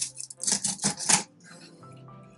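A kitchen knife cutting into a white sucker behind its gills on a wooden cutting board, the first cut of a fillet down toward the backbone. It makes a few short, sharp scraping strokes in the first second or so, then goes quieter.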